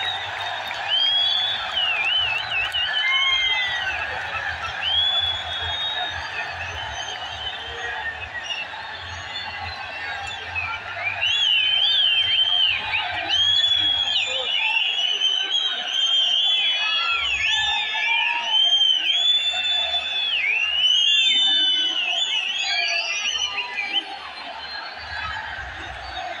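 Din of a large stadium crowd at a cricket match, with many high whistles rising and falling over the mass of voices. The whistling is thickest from about eleven to twenty-two seconds in.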